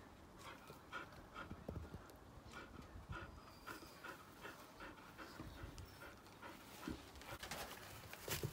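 A dog panting softly in quick, short breaths, about three a second.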